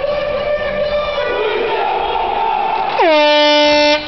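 A horn being blown: a thinner steady note for the first few seconds, then, about three seconds in, a much louder blast that swoops down in pitch, holds a low steady note for about a second and cuts off suddenly.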